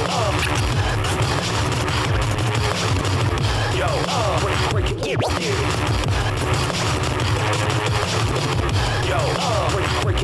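Turntablist scratching on vinyl records over a hip-hop beat: the scratched sounds slide rapidly up and down in pitch above steady heavy bass. There is a brief drop-out about halfway through.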